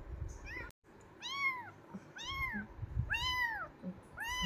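Young kitten mewing three times, about a second apart, each call rising and then falling in pitch.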